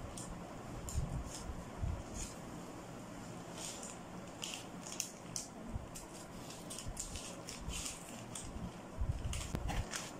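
Scissors cutting through brown kraft pattern paper: crisp snips at irregular intervals, with paper rustling and a few low thumps, over a steady room hum.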